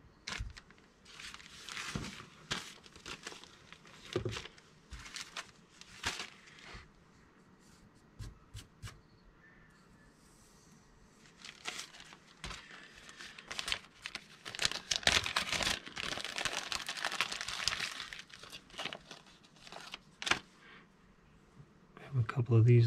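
Plastic parts bags crinkling and rustling as they are handled, in short spells with a longer, busier stretch of rustling about two-thirds of the way through.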